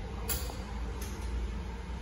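Steady low background rumble, with a brief hiss and a faint click near the start.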